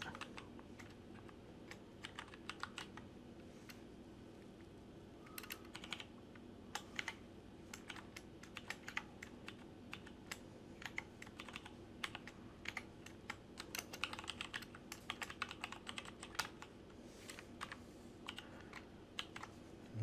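Computer keyboard typing: faint, irregular keystroke clicks in quick runs, with a short lull a few seconds in, over a steady low hum.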